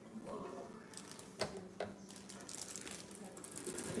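Soaked sea moss being put by hand into a Ninja blender's plastic jar: quiet handling sounds, two sharp taps about a second and a half in, then light clicking and rustling.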